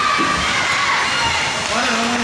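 Hockey spectators shouting and cheering, a steady din of many voices with children's voices among them and a held shout near the start.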